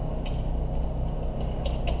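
Four clicks of computer keyboard keys being typed: one about a quarter second in, then three in quick succession near the end, over a steady low hum.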